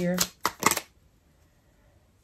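A tarot deck being shuffled by hand, overhand: a few quick card slaps in the first second.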